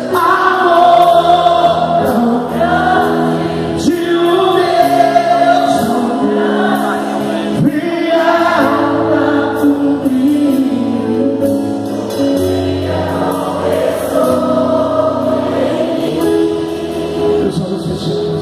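Gospel worship music: voices singing over long held keyboard chords.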